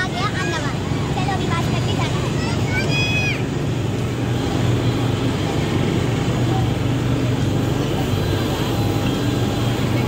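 Steady engine drone of vehicles and aircraft on an airport apron, with high voices calling out over it in the first three seconds.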